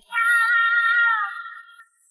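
One long, high-pitched, cat-like call from a cartoon sound effect, steady in pitch with a slight waver, fading out after about a second and a half.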